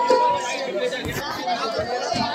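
Chatter of several people talking at once, with a held musical note that stops about half a second in.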